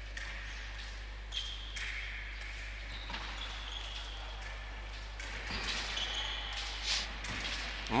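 Faint sounds of a foil bout in a hall: short high squeaks and scattered taps of fencers' shoes on the piste, over a steady low hum.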